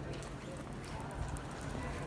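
Street ambience: background voices of passers-by over a steady low rumble, with a quick run of sharp clicking taps in the middle.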